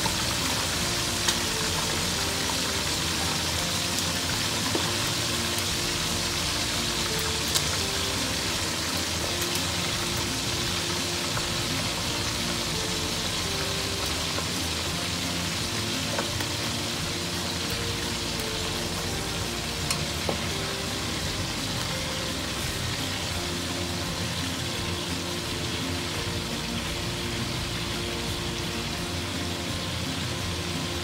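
Chicken pieces deep-frying in a pan of hot oil: a steady, loud sizzle, with a few sharp clicks of metal tongs against the pan as the pieces are turned. Soft background music plays underneath.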